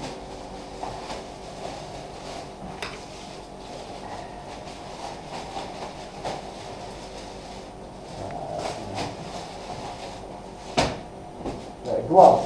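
Steady room noise with a few small scattered clicks and knocks, and one louder sharp click near the end.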